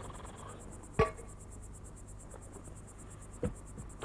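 Crickets chirping steadily as night ambience, with two sharp knocks: a louder one about a second in and a softer one near the end.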